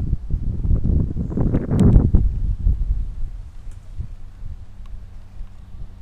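Wind buffeting the camera microphone: an uneven low rumble that swells to its loudest about two seconds in, then eases off.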